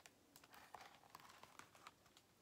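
Near silence with faint paper rustling and a few light clicks as a picture book is handled and its page turned.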